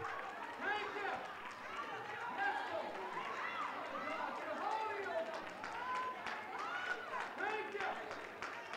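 Several people calling out praise, their voices overlapping and indistinct, quiet and off-microphone.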